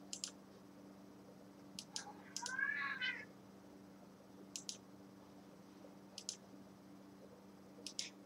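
A domestic cat meows once, about two and a half seconds in, a short call that rises and falls in pitch. Faint sharp clicks come in pairs every second or two over a low steady hum.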